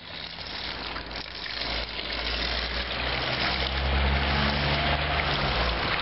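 Outdoor street ambience: a steady rushing noise with a low engine hum that grows from about three seconds in, swells, and eases off shortly before the end.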